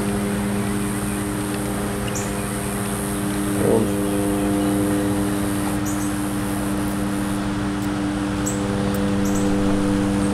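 Steady, even-pitched machine hum that holds unchanged throughout, with a few short, faint high chirps over it.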